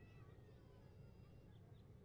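Near silence: faint outdoor ambience with a low rumble, and a faint drawn-out high call that fades away in the first second.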